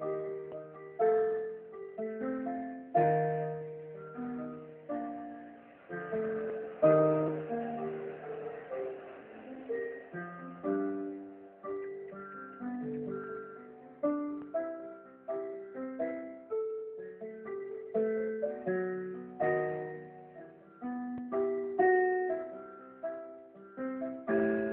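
Electronic keyboard played with a piano voice: a song tune picked out over held chords, each struck note fading away, with a new note or chord every half second or so.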